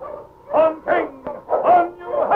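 A dog barking about three times in quick succession on an old radio broadcast recording, with music under it.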